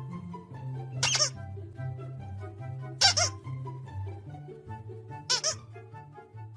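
A squeaky plush dog toy squeaked three times, short high squeals about two seconds apart, over background music with a steady bass line.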